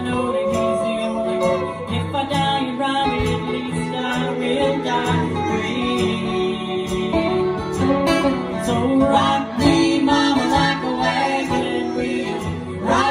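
Live acoustic country-folk band: two acoustic guitars strummed, with singing.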